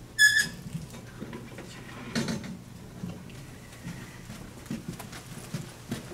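A short, high-pitched squeak just after the start, followed by low room noise with a soft knock about two seconds in.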